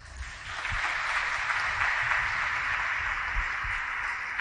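Applause from an audience as a flute piece ends, starting suddenly and swelling over the first half second, then holding steady.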